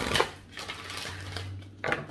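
A deck of oracle cards being shuffled by hand: a burst of card rattle at the start, a softer steady rustle, then a few quick card snaps near the end.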